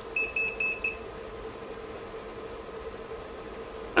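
Electronic beeper sounding four quick, high-pitched beeps within about a second near the start, then a steady faint electrical hum.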